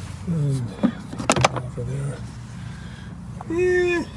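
The clips of an ATV's plastic air box cover being unlatched and the cover lifted off, with a few sharp clicks about a second and a half in, among brief murmured voice sounds.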